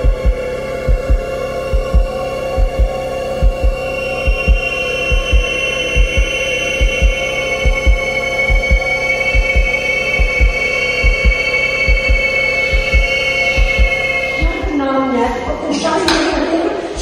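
Tense background music: a sustained synth drone of held tones over regular heartbeat-like bass thumps in pairs. A voice comes in near the end.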